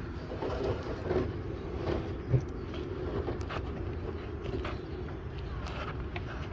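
A steady low engine rumble runs underneath small metallic clicks as metal cable guides are handled and fitted into a fibre cable blowing machine, with one sharper knock a little over two seconds in.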